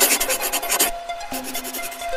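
Electronic intro music with a short, rasping swoosh sound effect over it during the first second.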